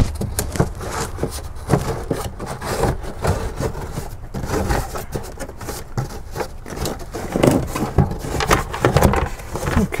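Cardboard glove box liner scraping and rubbing against the steel dash opening as it is worked out by hand with a plastic pry tool, with irregular light knocks and rustles.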